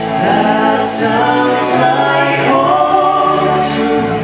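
A woman and a man singing a gospel duet into microphones, over an accompaniment of held low notes.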